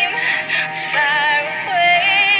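Pop song: a singer holds long, wavering notes over a synth backing.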